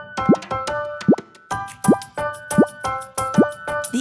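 Playful children's music of held synth tones with a repeated cartoon 'plop' sound effect: a short upward-gliding pop about every three-quarters of a second, five in all, with a quick run of light clicks near the start.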